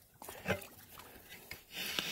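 Faint rubbing and shuffling of someone moving through a muddy, shallow creek bed, with a short knock about half a second in and a rising rush of noise near the end.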